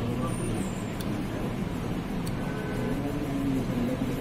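A man's voice talking, over a steady low background rumble.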